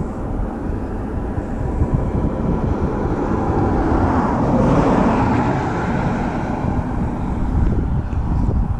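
Wind rumbling on the microphone, with the noise of a passing vehicle swelling to a peak about halfway through and then fading.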